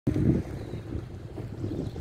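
Wind buffeting the microphone: an uneven low rumble, loudest in a burst right at the start.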